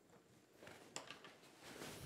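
Near silence: room tone, with a couple of faint ticks about a second in.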